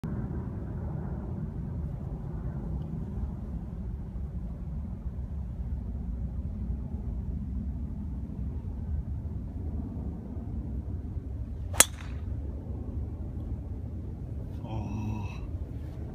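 A driver's clubhead striking a golf ball off the tee: one sharp crack about twelve seconds in, the loudest thing heard, over a steady low background rumble.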